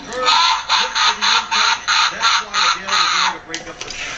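A voice clip played through a novelty mooning Santa figure's small built-in speaker: a fast, even run of syllables about four a second, stopping about three seconds in.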